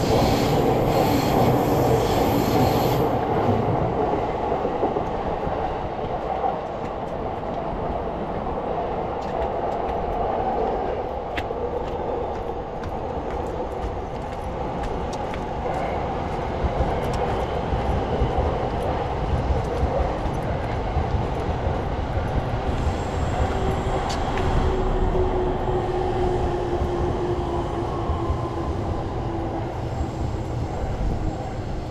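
A train running along the tracks: a steady rumble with wheel noise, and a faint whine slowly falling in pitch in the last few seconds.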